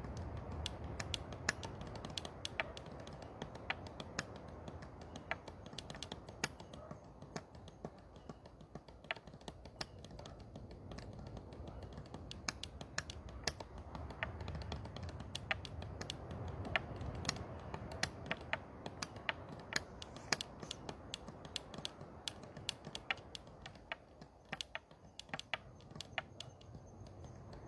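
Irregular sharp clicks and ticks, several a second, over a low steady rumble.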